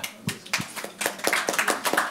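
Scattered applause from a small audience: a few people clapping briefly, with quick, irregular claps.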